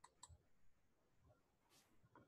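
Near silence with two faint clicks about a quarter second apart near the start, typical of a computer mouse being clicked, and a brief faint hiss near the end.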